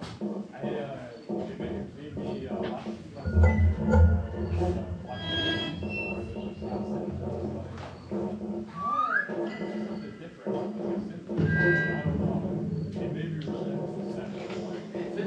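Live improvised experimental electronic music from synthesizers and a modular rig: a busy texture of scattered clicks and short bleeps. Heavy low bass swells come in about three seconds in and again near eleven seconds, and a short rising tone sounds near nine seconds.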